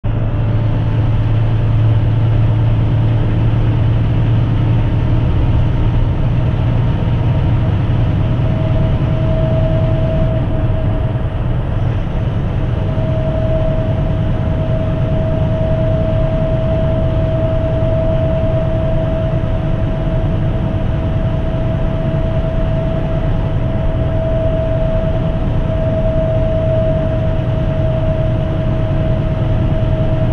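Semi-truck cab interior at highway cruising speed: the diesel engine's steady low drone mixed with tyre and road noise, with a faint constant whine above it.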